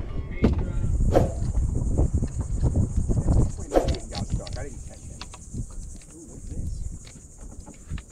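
Insects buzzing steadily at a high pitch, starting about a second in, over a low rumble that fades after the first half and a few sharp knocks.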